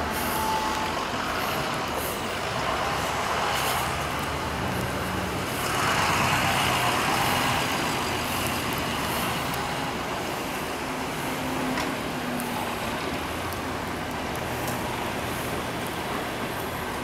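Street traffic in the snow: buses and other motor vehicles passing on a snowy road, with a louder hiss about six seconds in.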